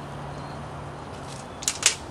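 Two sharp clicks near the end from a front-wheel-drive recumbent trike as the rider starts to pedal, the second louder, over a steady low hum.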